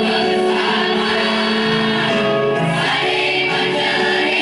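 A young men's choir singing together, holding long notes that change pitch every second or so.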